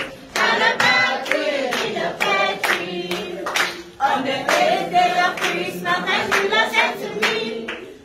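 A group of people singing together with rhythmic hand clapping. The sound jumps abruptly about four seconds in.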